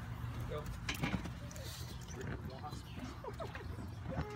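Faint babbling of toddlers over a steady low hum, with one sharp knock about a second in.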